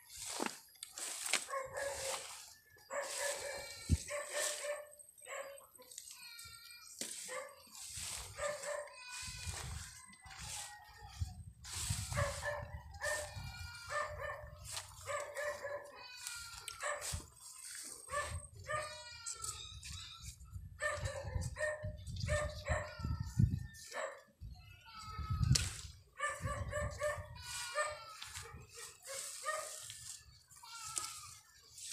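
Repeated dog barks and yips, short sharp calls coming over and over, with a low rumbling noise underneath through the middle.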